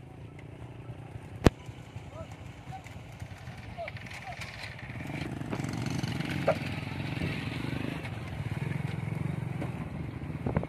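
Small motorcycle engine running steadily, louder for a few seconds past the middle. There is one sharp click about one and a half seconds in.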